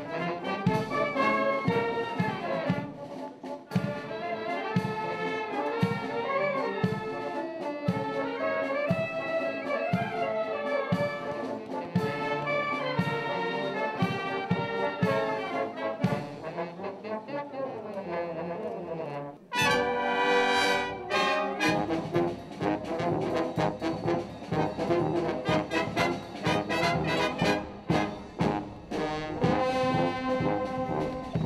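Military brass band playing a march, brass over a steady drum beat of about two strokes a second. About two-thirds of the way through, the music breaks off suddenly and another brass passage starts.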